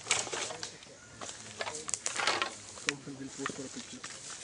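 A few people talking quietly, with scattered short rustles and crunches from feet and bodies moving through leaf litter and undergrowth.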